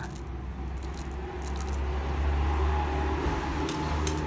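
Small round metal jingle bell on a nylon pet collar jingling faintly in short tinkles as the collar is handled, over a steady low hum. The bell's sound is small and quiet.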